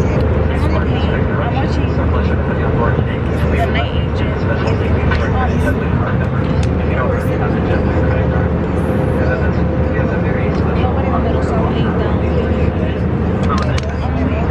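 Jet airliner cabin noise: a loud, steady low drone of engines and rushing air, with a faint steady hum above it.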